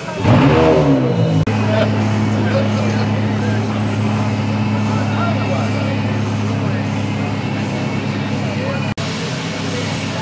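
A car engine at a car show: a loud engine note swings up and down in the first second or so, then settles into a steady idle hum, with people talking in the background.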